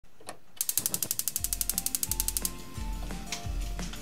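A fast, even run of mechanical clicks, about ten a second, lasting about two seconds, while background music with a steady bass beat starts up underneath and carries on after the clicks stop.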